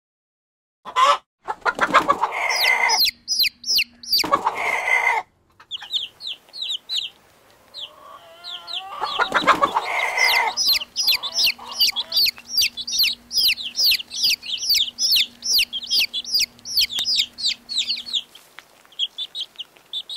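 Chickens: starting about a second in, a few loud, harsh calls from grown birds, then chicks peeping rapidly, about three or four high, falling peeps a second, for most of the rest.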